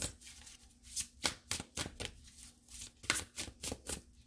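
Oracle cards being shuffled by hand: a run of irregular soft, crisp riffling strokes, loudest about three seconds in.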